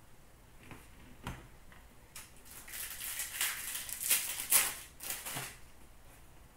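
Upper Deck Series 2 hockey card pack wrapper being torn open and crinkled: a run of sharp, irregular crackling rustles lasting about three seconds, starting around two seconds in, after a couple of soft taps.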